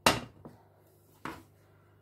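Frying pans knocking as they are handled and set down on a glass-ceramic hob: a sharp knock at the start, a faint one just after, and another a little over a second in.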